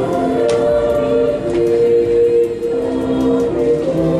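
A choir singing slowly, holding long notes in chords that change every second or so.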